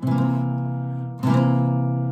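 Acoustic guitar: a chord is struck at the start and another about a second later, and each is left to ring.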